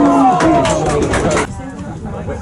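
Men shouting and calling on a floodlit football pitch, one call held for a moment, with a few sharp knocks in the first second and a half; it all drops away abruptly near the end.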